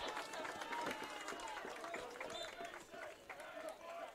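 Faint, distant voices of players and people on the sideline calling out across an outdoor soccer field during play.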